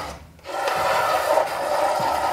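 A broad scraper dragged across a large painted canvas in one long scraping stroke that starts about half a second in.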